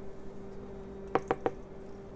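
Three quick light taps of a measuring spoon while flour is spooned into melted butter for a roux, over a low steady hum.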